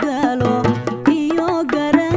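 A woman singing a Somali song, her voice sliding and bending in pitch through ornamented phrases, over a steady drum beat.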